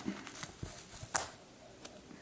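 Faint rustling of yarn loops being worked off a piece of cardboard by hand, with one sharp click about a second in.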